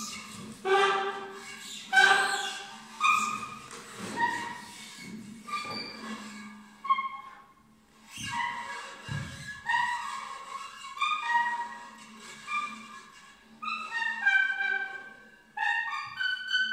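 Saxophone neck fitted with a tube, blown in short pitched squealing notes that step and bend in pitch with brief gaps between them. Underneath is a prepared guitar laid flat on a table, with a faint low steady tone and a couple of low thuds a little after halfway.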